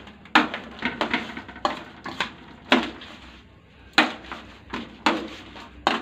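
Chopsticks knocking and clicking against a stainless steel pot as raw veal is turned and mixed in its marinade: about ten irregular sharp knocks, with soft wet rustling between them.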